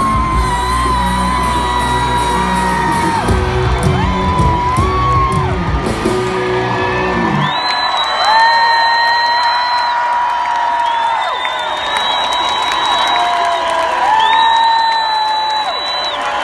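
A live rock band finishing a song: full band with bass and drums, which cuts out about seven and a half seconds in. After that only long, loud, high wailing notes remain, each sliding up at its start and falling away at its end, over the noise of a cheering crowd.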